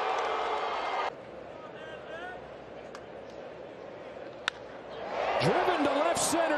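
Ballpark crowd noise that cuts off about a second in to a quieter stadium murmur. About four and a half seconds in comes a single sharp crack of a bat hitting a pitched baseball, and the crowd noise rises after it.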